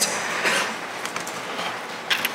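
Steady, even hiss of room noise with no speech, slightly stronger about half a second in.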